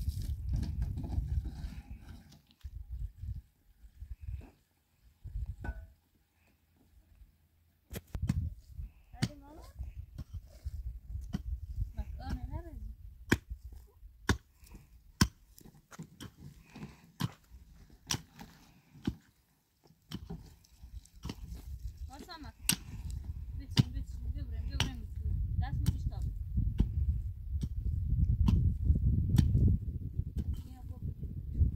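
Repeated short, sharp strikes of a hand digging tool biting into dry, stony earth, often about one a second and irregular, through most of the latter part.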